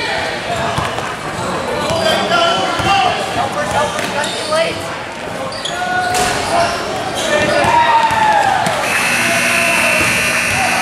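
Basketball being dribbled on a gym court amid players' and spectators' voices in a large hall. About nine seconds in, a steady electronic scoreboard buzzer starts sounding.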